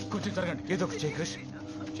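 Urgent voices of several people speaking, over a steady low sustained tone.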